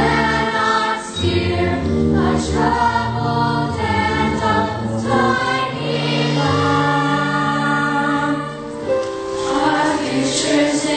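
Young cast chorus singing an ensemble number from a stage musical over instrumental accompaniment, with long held notes in the second half.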